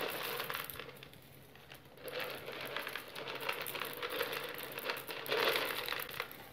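Dried chickpeas rattling and clicking against each other and the glass baking dish as a hand spreads and levels them. The sound dips for about a second near the start, then runs on as a dense patter of small clicks, over a faint steady hum.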